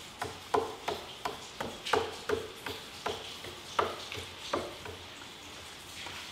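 A paintbrush dabbing and stroking paint onto the wooden side of a stair: a run of short brushing taps, about three a second, that stops about four and a half seconds in.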